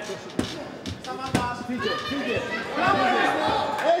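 Kickboxing strikes landing: two sharp smacks, about half a second and a second and a half in, under men's shouting in Greek in a large hall.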